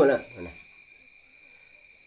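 Crickets chirring steadily in the background, a continuous high-pitched sound. A man's voice stops about half a second in, leaving only the crickets.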